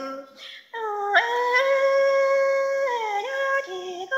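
A woman singing Hmong kwv txhiaj (lug txaj) in a solo voice: after a short breath, a long high note held for nearly two seconds, then a downward slide into a few shorter notes.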